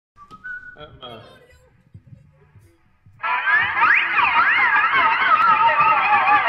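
A brief murmured "uh" over faint scattered sounds, then about three seconds in an electric guitar comes in loud, holding sustained notes that waver up and down in pitch.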